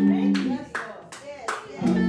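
Church instrumental music holding steady chords, with rhythmic hand clapping a little under three claps a second. The chords break off about half a second in and come back just before the end, while the clapping keeps time.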